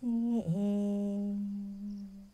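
Women chanting a Pali merit-dedication verse in the Thai Buddhist style, drawing out one syllable on a single steady pitch, with a brief dip in pitch about half a second in, then fading near the end.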